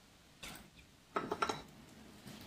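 A few sharp clinks and knocks of small hard objects being handled: one short one about half a second in, then a quick cluster of several just after a second in.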